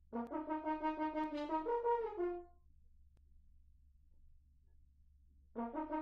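Solo French horn playing a quick phrase of detached, repeated and stepping notes that stops about two and a half seconds in. After a pause of about three seconds, a second similar phrase starts near the end.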